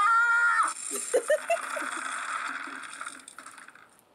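A short high-pitched cry, then a loud, harsh crunching rattle of hard-shelled candy being poured into a mouth and chewed, fading away over a few seconds.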